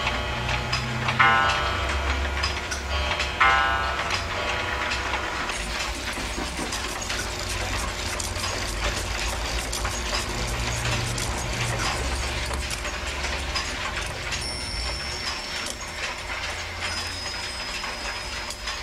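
Mechanical clocks ticking, with many overlapping ticks and the whirr of their movements. A bell strikes twice, about a second in and again two seconds later.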